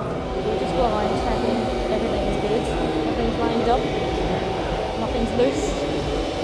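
Speech over a steady mechanical hum with a constant high tone underneath.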